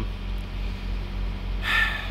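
Refrigerated trailer's reefer unit running with a steady low drone, with a brief hiss near the end.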